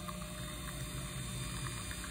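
Nespresso capsule coffee machine running steadily mid-brew, a low, even hum.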